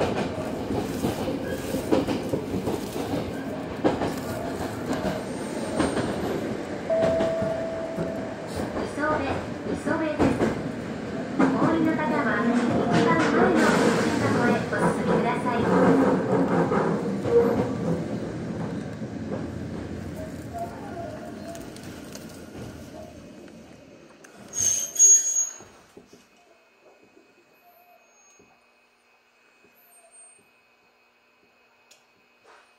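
Electric commuter train running on the rails, with wheel rumble and clatter and a changing motor whine, then slowing and fading over the last third. A short, sharp high-pitched burst comes about 25 seconds in as the train comes to a stop, and then it is much quieter.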